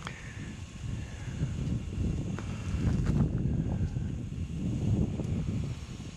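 Wind rumbling and buffeting on the camcorder's microphone, rising and falling, with a few faint knocks near the middle.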